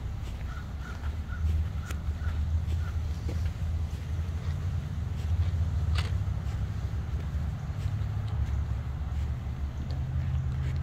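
Outdoor park ambience with a steady low rumble, and a bird calling a quick run of about seven short notes at one pitch during the first three seconds. A few scattered light clicks, the sharpest about six seconds in.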